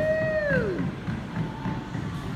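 Bowling ball rolling down a wooden lane, a low rumble, under pop music playing over the bowling alley's sound system. A long held vocal note falls away within the first second.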